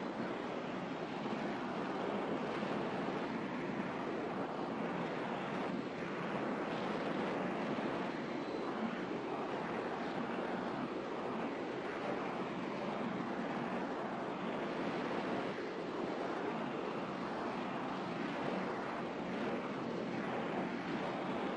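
Steady room noise in a classroom: an even hiss-like wash with no distinct events.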